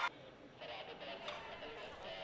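Faint pitch-side ambience of a football match, with distant voices from the field.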